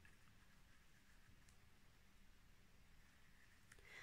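Near silence: room tone with a few faint clicks as a metal crochet hook works stitches through yarn.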